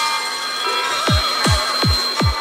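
Dark psytrance track at 176 BPM: layered electronic synth lines, with the kick drum absent for the first second and then returning as deep kicks that drop sharply in pitch, about three a second.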